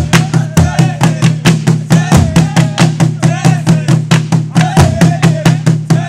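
Traditional Burundian ingoma drums, large wooden drums with hide heads beaten with sticks, played together in a rapid, steady, driving beat. Voices chant and call over the drumming.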